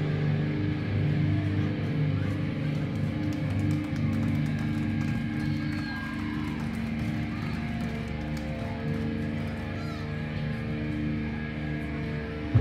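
Live band's amplified electric guitars and bass holding long, low droning notes, with little drumming.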